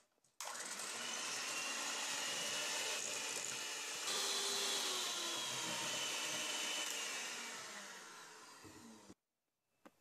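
Electric hand mixer running, its beaters whisking egg yolks and sugar in a stainless steel bowl. The motor sound steps up a little about four seconds in, then fades and cuts off sharply about a second before the end.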